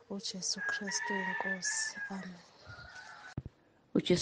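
A person's voice with a long, held bird call behind it for about a second and a half; the sounds fade out, and a short click comes near the end.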